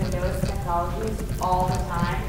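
A woman speaking, over a steady low rumble.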